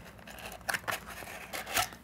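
A small white cardboard box and its folded cardboard insert handled by hand: a few short scrapes and rustles of cardboard, the loudest near the end.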